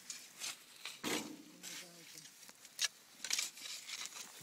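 Spades and a shovel digging into soil: several separate scraping strokes as the blades cut and lift earth.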